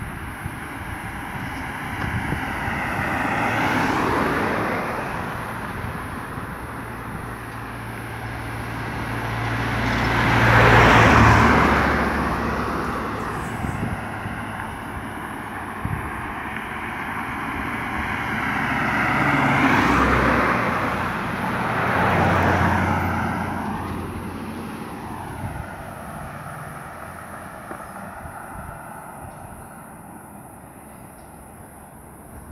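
Cars driving past one after another on an asphalt road: four pass-bys that each swell and fade, the loudest about eleven seconds in, with the road noise dying away near the end.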